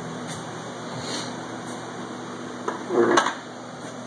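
Footsteps and handling noise from someone walking around a car with a phone, over a steady background hum, with a louder short clunk about three seconds in.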